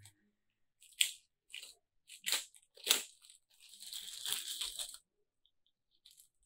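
Thin paper wrapping crinkling and rustling as a phone charger and its cable are pulled out of it: several short crackles, then a longer rustle that stops about five seconds in.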